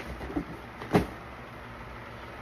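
A single short knock about a second in, with a few faint clicks, from shoes being handled, over a low steady background rumble.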